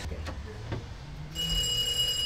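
Electronic doorbell ringing with a steady, high-pitched tone for just under a second, starting about a second and a half in.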